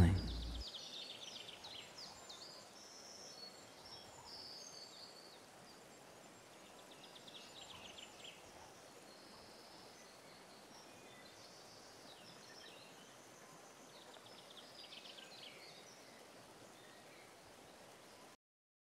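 Faint woodland birdsong: scattered chirps and short rapid trills from several small birds over a low steady hiss of outdoor ambience.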